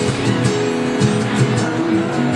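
Live music: a steel-string acoustic guitar strummed in a steady rhythm, several notes sounding together.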